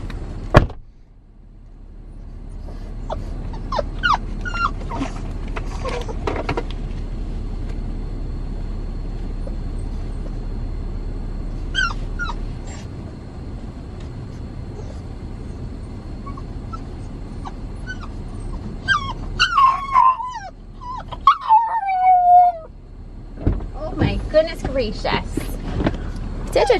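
A dog whining inside a moving SUV's cabin over the vehicle's steady low driving rumble. A sharp knock comes just after the start. A few short whimpers follow, then long falling whines about twenty seconds in.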